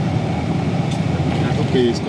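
A steady rumble of a vehicle running, with a faint voice near the end.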